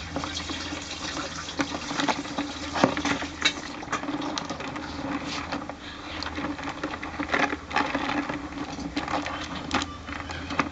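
Crabs' legs and claws clicking and scraping against a plastic basin in shallow water: irregular sharp ticks over a steady low hum.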